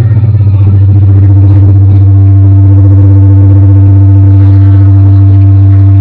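A loud, steady low drone from the band's amplified instruments: one deep note held without change, with a fainter higher tone above it.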